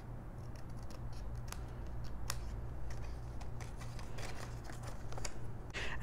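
Fine-tip craft scissors snipping the edges of a cardstock ephemera card: a run of faint, irregular snips and clicks, trimming off parts that were not fully cut. A low steady hum lies underneath.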